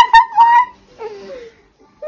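A baby squealing and giggling while being played with: a loud, high-pitched squeal at the start held for about half a second, then a softer, falling one about a second in.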